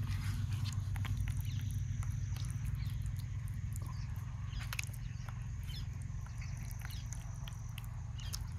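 Fingers squishing and smearing thick, wet masala paste onto raw fish steaks: small sticky squelches and clicks, over a steady low hum and a thin, steady high insect-like buzz.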